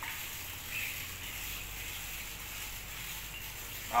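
Handheld pump pressure sprayer misting water: a faint, steady hiss.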